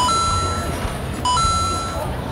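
An electronic two-note beep: a short lower note stepping up to a longer, higher held note, repeating about every 1.3 seconds, twice, over a steady low rumble.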